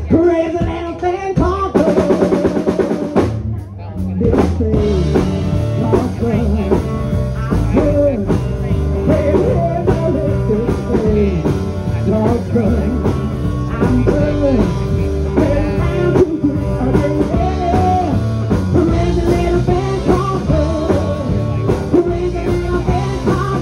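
Rock band playing live: electric guitar, bass guitar and drum kit, with a singer. A short fast passage about two seconds in gives way, after a brief dip, to the full band playing steadily.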